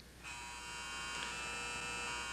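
An electric buzzer sounding one steady, unbroken buzz, starting a moment in and holding without change.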